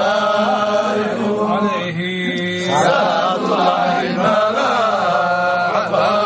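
Men's voices chanting an Arabic devotional poem (a qasida in praise of the Prophet) in a drawn-out melodic line, with a short break about two seconds in.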